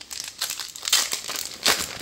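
Foil wrapper of a Magic: The Gathering play booster pack crinkling and tearing as it is pulled open by hand, with a louder rip near the end.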